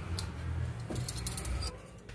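Metal spoons clinking lightly as they are handled and rubbed dry with a cloth: a scatter of small, quick chinks over a low rustle of handling that fades near the end.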